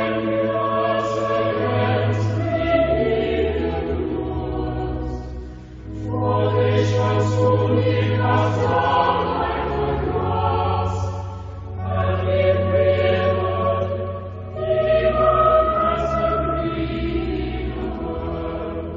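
Choir singing a chant after the lesson, in long held phrases over sustained low notes, with brief breaks between phrases about six, twelve and fifteen seconds in.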